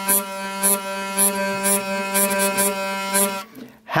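Hurdy-gurdy trompette string droning a steady G as the wheel is cranked, with short repeated buzzes on top, its tensioner set at the sweet spot where it buzzes on the cranking-hand flicks. The drone stops a little before the end.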